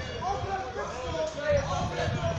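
A group of young men's voices singing a celebration chant, over a steady low rumble of vehicle and road noise.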